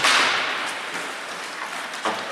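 Ice hockey play in a rink: a sudden sharp crack, loudest right at the start, fading over about half a second in the arena's echo.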